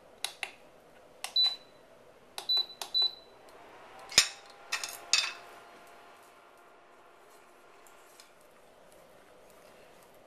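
Touch controls of a portable induction cooktop beeping four short high beeps, among soft clicks of button presses, as it is switched on and set to medium heat. A single sharp tap comes about four seconds in, followed by a faint steady hum.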